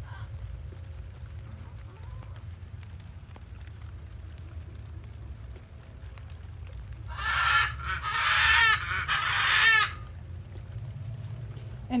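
Poultry calling loudly for about three seconds, a rapid run of short repeated calls in three close bursts starting about seven seconds in, over a steady low rumble.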